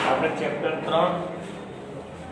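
A man speaking briefly, opened by a sharp click at the very start.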